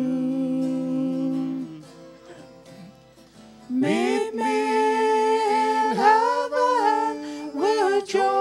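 A small vocal group of three women and a man singing in harmony with acoustic guitar accompaniment. A held chord fades out after about two seconds, there is a quiet stretch, and the voices come back in strongly about halfway through.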